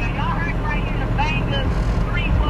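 Steady low rumble of a vehicle heard from inside its cabin, with several people's voices talking in the background.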